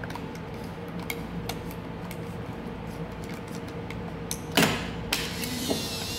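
A Contax T2 compact film camera being loaded by hand. There are small clicks of handling, a sharp snap about four and a half seconds in as the back is shut, then the camera's motor whirs for about two seconds as it advances the film.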